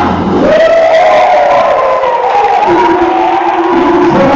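Gospel choir and congregation voices holding long, high notes and calling out together, after the drum kit drops out in the first half-second.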